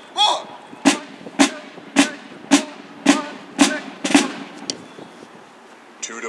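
Field drum struck seven times in an even, steady beat of about two strokes a second, each a single sharp hit, then falling quiet.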